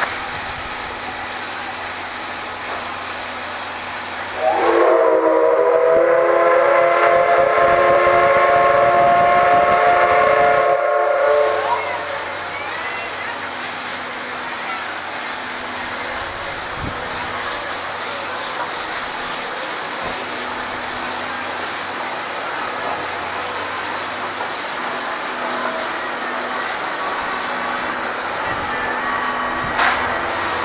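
C57 steam locomotive hissing steam, then sounding its steam whistle in one long chord-like blast of about seven seconds, rising slightly in pitch as it opens. After the whistle it hisses steadily as the train pulls out.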